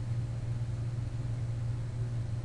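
A steady low mechanical hum, like an engine running, unchanging throughout.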